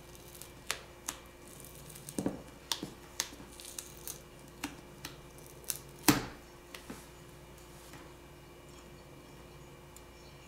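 Scattered sharp little clicks and light scrapes from a thin speaker grill being peeled off a smartphone's front and handled between fingertips, the loudest click about six seconds in. Quieter from about seven seconds on.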